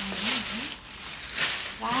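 Paper and tissue rustling and crinkling as a gift is unwrapped, in two spells about a second apart, with a voice murmuring under the first and a spoken "wow" at the end.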